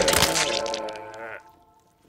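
Staged projectile vomiting: a loud, wet, splattering gush as the spray hits a man, fading out about a second and a half in.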